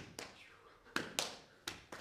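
Sharp taps and slaps of dancers' feet and hands striking the stage floor and their own bodies: five strikes at uneven spacing, each with a short echo.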